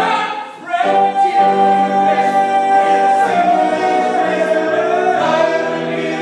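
Live vocal trio of a woman and two men singing together. There is a short break about half a second in, then a long high note held for about two seconds over the lower parts.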